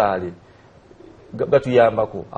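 A man speaking, with a falling end to a phrase, a pause of about a second, then speech again.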